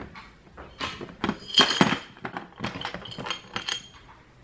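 Small metal trinkets and junk jewelry clinking together as a hand sorts through a pile of them: a run of light, sharp clicks with a faint high ring.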